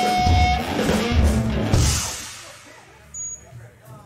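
Live rock band: distorted electric guitar with drum and bass hits, breaking off about two seconds in. Then faint room noise, with a brief high tone shortly before the end.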